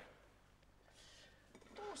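Near silence: room tone, with a faint short hiss about a second in and a man's voice starting near the end.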